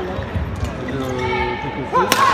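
A badminton racket strikes a shuttlecock once, a sharp click about two-thirds of a second in, during a rally in an arena full of spectator voices and calls.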